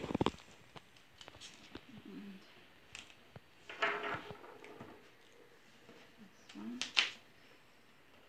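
Paper handled on a tabletop while the backing strip of double-sided sticky tape is peeled off: small clicks and a few brief rustles, the loudest near the end.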